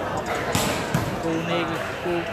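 A volleyball being struck during a rally, two sharp smacks in quick succession, over the chatter of a crowd in a hall.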